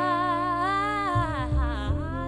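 Jazz trio of female voice, saxophone and upright double bass playing: a long melody note held with vibrato that slides down about a second in, over plucked bass notes.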